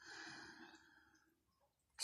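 Near silence, with one faint breath or sigh in the first second.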